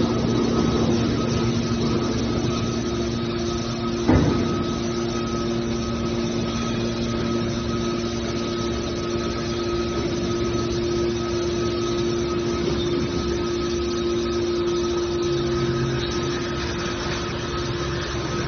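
Hydraulic power unit of a scrap metal baler running as a steady hum while the cylinders slowly close the baler's lid. A single knock comes about four seconds in.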